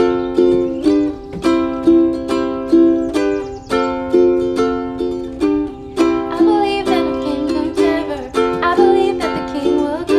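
Ukuleles strummed in a steady rhythm of chords. A woman's singing voice joins the strumming about six and a half seconds in.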